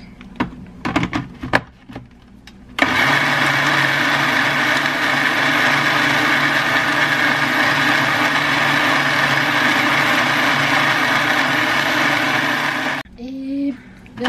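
Countertop blender running at one steady speed for about ten seconds while it blends a smoothie, starting and stopping abruptly. A few sharp knocks come from the jar being handled before the motor starts.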